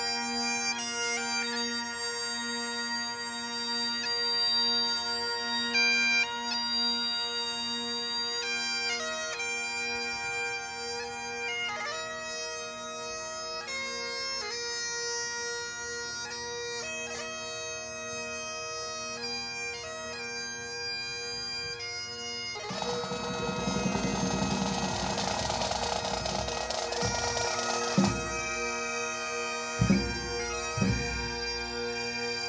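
Great Highland bagpipes of a pipe band playing a slow tune over their steady drones. Near the end a drum roll of about five seconds comes in, closed by a sharp drum beat.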